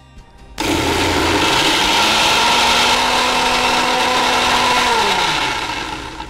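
Electric mixer grinder grinding a masala into a fine paste. The motor starts suddenly about half a second in, runs up to speed and runs steadily, then winds down with a falling pitch near the end.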